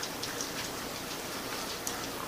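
Low, even background hiss with a few faint ticks.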